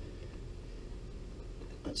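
Quiet room hum with one short metallic click near the end as the crank-puller socket is handled on the bike's crank bolt.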